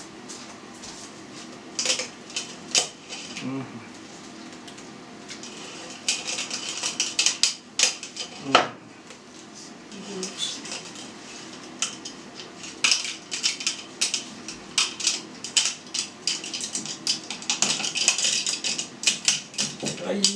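Elastic food-grade rubber meat netting rubbing and scraping against a white plastic tube as it is stretched over it by hand. The scratchy rubbing comes in stretches of a few seconds, mixed with scattered sharp clicks and knocks, the loudest a little past the middle.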